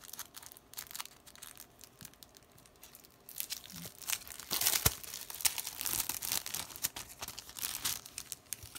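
Clear plastic sticker-kit packaging being handled and crinkled, faint at first and then a dense crackling from about three seconds in.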